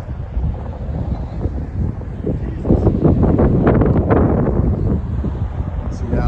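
Wind buffeting the microphone: a loud, low rumble that gets louder about halfway through.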